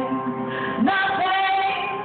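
A woman singing live to her own acoustic guitar. She slides up into a long held note about a second in.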